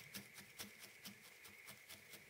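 Faint, rhythmic soft pokes of a felting needle tool stabbing into wool, about five a second, as loose fibres are felted onto the piece.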